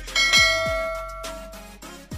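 A single bell-ding sound effect, struck just after the start and ringing out over about a second, over background music with a kick-drum beat.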